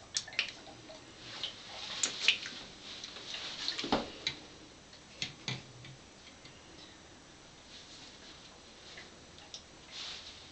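Scattered small plastic clicks and taps as a handheld pH meter is handled and stood in a small plastic cup of water, the strongest knock about four seconds in. The taps die away after about six seconds.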